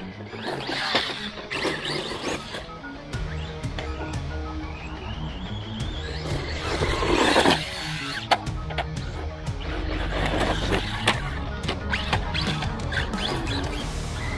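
Background music with steady bass notes over a Rlaarlo ROG1 Gladiator 1/14 brushless RC truck running on gravel. Its motor whine rises about five seconds in, and sharp knocks follow as the truck tumbles and lands.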